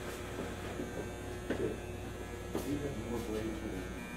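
Steady electrical buzz and hum from a running Aetrium 6000 bubble tester, with a couple of faint knocks.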